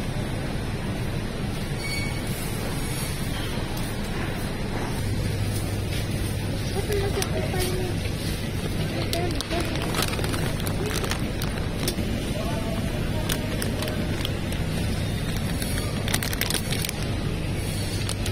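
Grocery store ambience: a steady hum and noise with faint, indistinct voices in the background. A few short crinkles and clicks near the end as a plastic produce bag is picked up.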